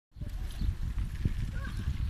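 Irregular low rumbling on a handheld camera's microphone while walking outdoors, with faint voices in the background.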